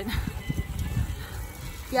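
Wind buffeting the microphone of a camera carried on a moving road bike, an uneven low rumble.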